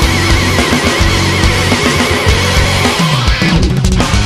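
Heavy rock band recording, with distorted electric guitar and drums and a high note held with fast, wide vibrato. Near the end a run of falling notes slides down in the low end and the band briefly thins out.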